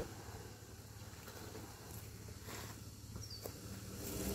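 Faint, steady low hum of a Ford four-wheel drive's engine running some way off, under quiet bush ambience, with a tiny high chirp a little after three seconds in.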